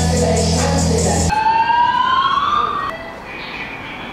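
A bass-heavy rap beat stops about a second in, and an emergency vehicle siren wails, rising steadily in pitch for about a second and a half before cutting off; a quieter stretch follows.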